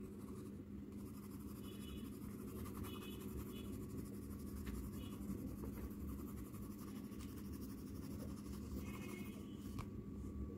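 Faint scratching of a black coloured pencil on paper in rapid shading strokes, over a steady low hum.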